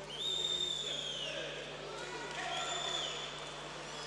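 Two high, shrill whistles ring out in a sports hall over voices calling out. The first lasts about a second and dips in pitch at its end; the second, shorter one comes near three seconds in.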